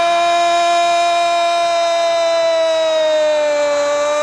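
Football commentator's long, held shout of 'gol', one sustained high note that sags slightly in pitch near the end and climbs back, as the goal goes in.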